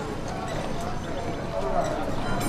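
Busy street ambience: indistinct chatter of passers-by under a steady clip-clop.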